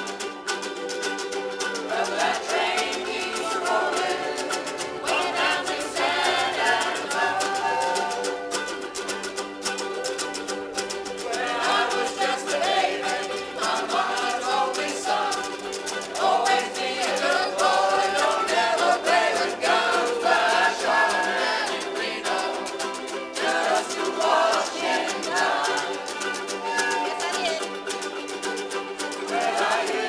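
A large ensemble of ukuleles strumming together in a steady rhythm, with a melody line above it that bends up and down in pitch.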